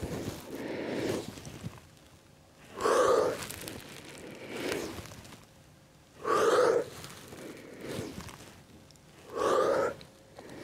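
A woman breathing hard with the effort of a prone back-extension exercise: three loud breaths about three seconds apart, with fainter breaths between.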